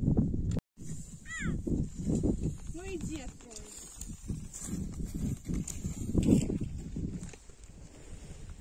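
Indistinct voices outdoors, a few short syllables without clear words, over irregular low rumbling noise. The sound drops out completely for a moment under a second in.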